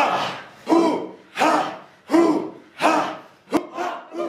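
A group of people giving short, forceful voiced exhalations in unison, about three every two seconds, with a sharp click near the end.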